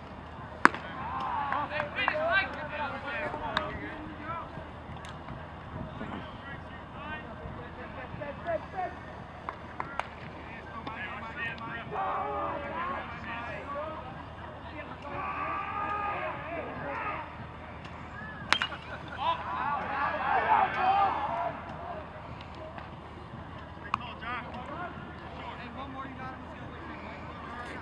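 Voices calling out across a baseball field in several bursts. A few sharp pops of a baseball smacking into a leather glove come through, the loudest about half a second in, just after a pitch is thrown.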